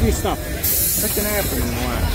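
A vintage New York City subway car's pneumatic door engines opening the doors: a sudden hiss of air that starts about half a second in and lasts about a second.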